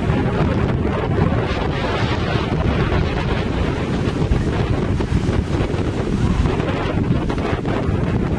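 Wind buffeting the microphone in a steady low rumble, over small surf waves breaking on a sandy beach.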